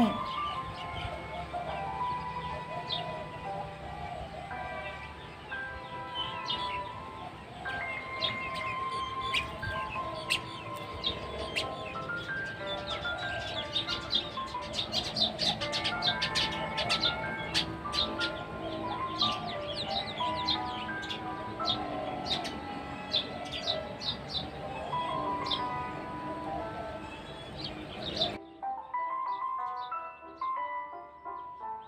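Background music, a simple melody of held notes, with rapid high bird chirps over it. About two seconds before the end the chirps and high sounds cut off suddenly, leaving a quieter melody.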